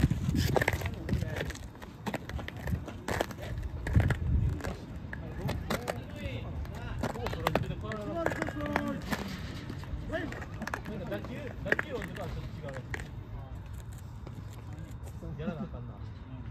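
Voices of baseball players calling out across the field, not close to the microphone, with a few sharp knocks. A low rumble comes and goes in the first few seconds.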